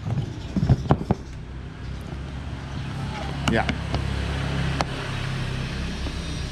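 A few sharp knocks and clicks from a hand on a hard plastic motorcycle top case about a second in. A steady low engine hum from a motor vehicle runs underneath and grows a little louder after about two seconds.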